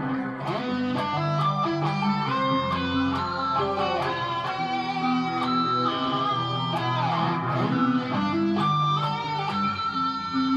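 Electric guitar playing lead over a pre-recorded loop: a steady run of picked notes with a few slides between them.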